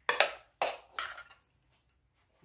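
A metal spoon scraping rigatoni in sauce out of a pot onto a ceramic plate: three short scrapes, the first two about half a second apart.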